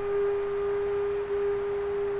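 Slow melody of long, very steady held notes; one note is held throughout.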